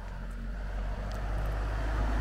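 A car driving up a narrow lane toward the listener, its engine and tyre noise growing steadily louder as it approaches.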